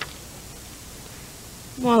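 A pause holding only a steady, faint hiss, then a girl starts speaking near the end.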